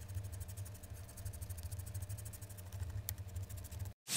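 A low steady hum with a faint, fast, even ticking over it and one sharper tick about three seconds in.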